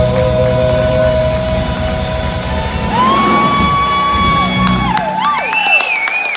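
Live band ending a song on a held final chord with a long, high sung note over it. The band cuts off about five seconds in, and whoops and the first claps from the audience follow.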